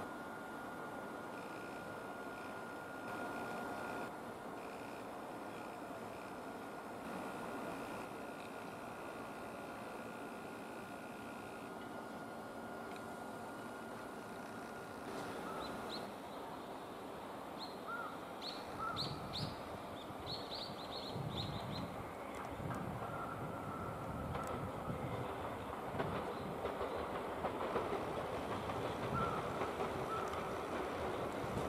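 Tobu 10000-series electric train moving slowly through curved yard tracks and points, a steady rumble with brief high wheel squeals about halfway through. Wheels knock over the rail joints and points, growing louder toward the end.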